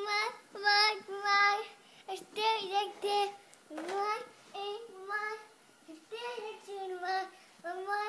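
Young girl singing unaccompanied in a child's voice, a run of short held notes in phrase after phrase with brief pauses between.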